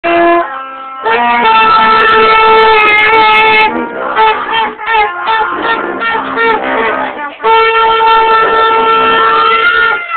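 Several school band wind instruments blasted together at close range, holding loud notes in a chord. A choppier, broken stretch comes in the middle, and near the end one note bends upward in pitch.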